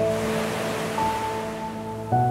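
Slow, soft piano music over ocean surf. A wave washes in at the start and fades away, while held piano notes ring on, with a new, higher note struck about a second in.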